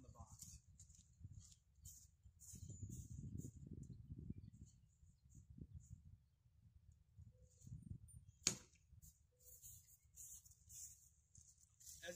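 Near-silent outdoor quiet with a low rumble for a couple of seconds, then one sharp knock about eight and a half seconds in: a hand-thrown spear striking the box target.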